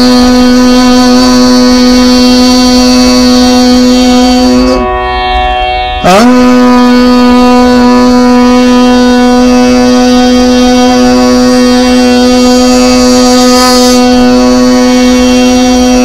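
A long-held musical drone on the note B, the scale given for the crown chakra's beeja mantra. It breaks off a little before five seconds, slides up into the same pitch at about six seconds, and holds steady again.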